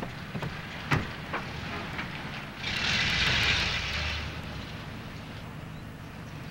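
Car sounds: a sharp knock about a second in, like a door shutting, then a noisy rush lasting about a second and a half as the convertible pulls away, over a low steady engine rumble.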